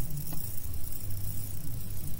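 Low steady background hum with faint hiss, and a single faint click about a third of a second in.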